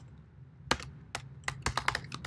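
Typing on a computer keyboard: a run of about half a dozen keystrokes starting under a second in, coming faster toward the end.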